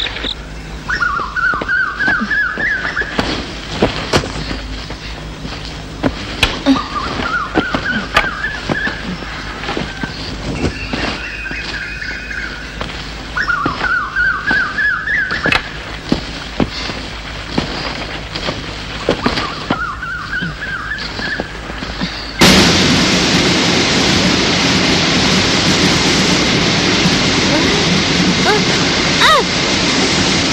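Forest ambience: an animal call rising in a quick run of notes recurs about every six seconds over scattered small clicks. About 22 seconds in, the sound cuts abruptly to the loud, steady rush of a waterfall.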